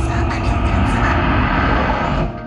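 A loud, steady engine-like roar with a deep rumble underneath.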